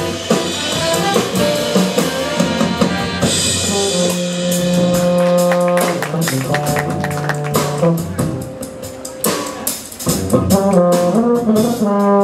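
Live jazz big band of brass, saxophones and drum kit playing, with long held brass chords in the middle. A quieter stretch of drum strokes follows, then the full band comes back in near the end.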